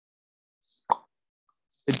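A single short pop about a second in, with near silence around it.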